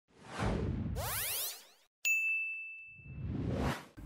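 Edited intro sound effects: a whoosh with a rising sweep, a bright ding about two seconds in that rings out for about a second, then a swelling whoosh that cuts off just before the voice.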